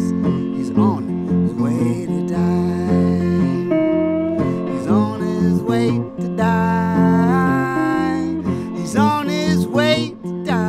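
Hollow-body electric guitar played solo: an instrumental passage of held, ringing notes over a steady low bass pattern, with notes sliding in pitch near the end.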